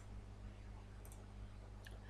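A few faint computer mouse clicks, from the mouse or its scroll wheel, over a steady low electrical hum.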